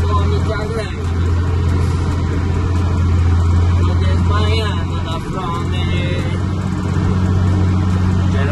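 Truck's diesel engine running while driving, heard inside the cab as a steady low drone that dips briefly about five seconds in.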